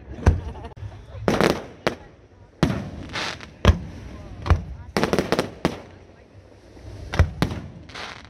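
Aerial fireworks bursting: sharp bangs roughly every second, some coming in quick clusters of several reports, each trailing off in a short crackle or echo.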